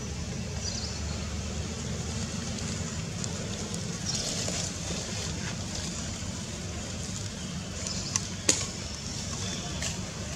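Steady low outdoor rumble with faint high chirps scattered through it and one sharp click about eight and a half seconds in.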